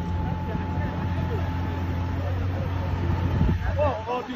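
Vehicle engine running steadily in a low hum under scattered crowd voices; the hum cuts off abruptly near the end.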